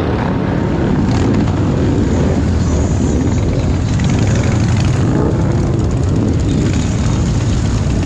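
Several large cruiser and touring motorcycles riding slowly past in a line, their engines making a steady, loud low rumble.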